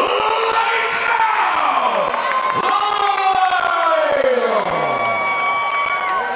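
Ring announcer calling out a fighter's name in long, drawn-out syllables that slide down in pitch, over a cheering crowd.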